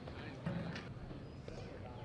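Faint distant voices at an outdoor ballfield over low outdoor background noise.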